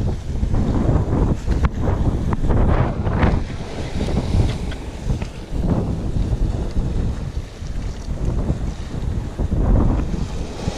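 Wind buffeting the microphone over waves washing and splashing against rocks.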